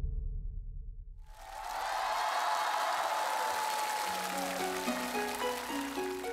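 Studio audience applause that swells in about a second in, over the instrumental intro of a song: a held note at first, then a run of stepped notes from about four seconds in.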